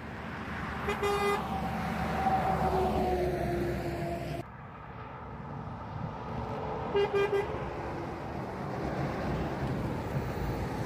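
Motorway traffic rushing past, with a lorry horn giving one short toot about a second in and three quick toots about seven seconds in. Between them a passing vehicle's tone slides slowly down in pitch, then the sound cuts off suddenly.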